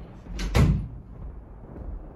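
A single sudden heavy thump about half a second in, dying away quickly.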